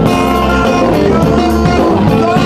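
Live band music led by an electric bass, with guitar and drums, playing at a steady level.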